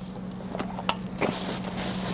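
Bed linen and a plastic-backed underpad rustling as a bedridden patient is rolled onto her side, with a few light knocks early on and louder crinkling from a little past one second. A steady low hum runs underneath.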